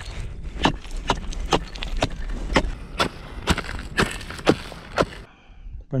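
Steel ice chisel striking and chipping into clear river ice to cut a new fishing hole, sharp strikes about two a second, stopping about five seconds in.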